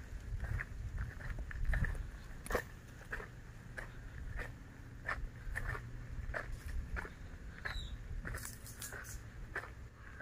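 Footsteps crunching on dry soil and fallen coconut fronds, about two short steps a second, over a faint low rumble.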